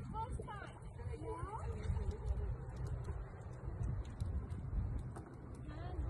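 Outdoor ambience at a lake: wind buffeting the microphone as a steady low rumble, with faint distant voices in the first second or so.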